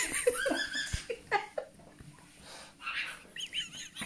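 A person laughing in several short, high-pitched spells of giggling with brief pauses between them.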